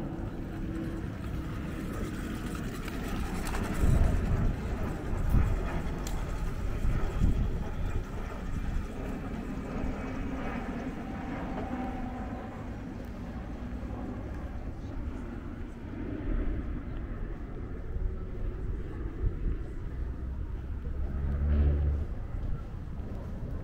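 Outdoor ambience on a riverside footpath: a steady low rumble of distant engines, with faint, indistinct voices of passers-by. A few low buffets hit the microphone about four to seven seconds in.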